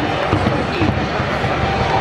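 University cheering section at a baseball game: many voices chanting together over a steady run of drum beats, about four a second.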